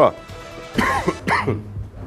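A man coughing twice into his fist, two short coughs about half a second apart.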